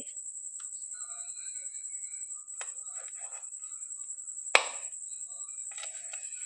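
Kitchen knife sawing through a rolled paratha on a ceramic plate, with faint scrapes and one sharp click about four and a half seconds in as the blade meets the plate. A steady high-pitched whine runs underneath.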